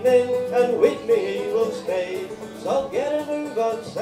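Live folk band playing an instrumental break: fiddle, banjo and acoustic guitar together, with the fiddle carrying a sustained, sliding melody.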